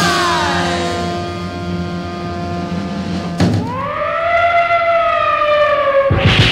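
A siren sound effect on a record: a falling wail over the last held chord of a horn band, then a second wail that rises about three and a half seconds in and holds, sagging slowly. These are the opening effects of a 1950s R&B record, leading into gunfire effects.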